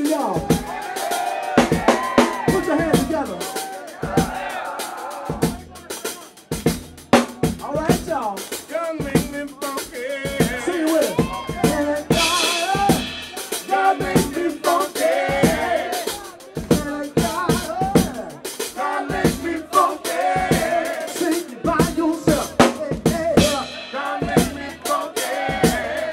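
Live funk band playing, with busy drum-kit hits and cymbal crashes over bass guitar and electric guitar.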